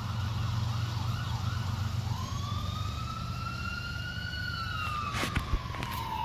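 An emergency vehicle's siren sounding over a steady low rumble. It starts with a quick warble, then from about two seconds in slowly rises and falls in a long wail.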